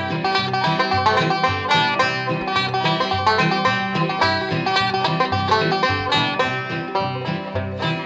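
Instrumental break of an old-time country song: a five-string banjo picking a quick run of notes, backed by an acoustic guitar keeping a steady bass-and-strum rhythm.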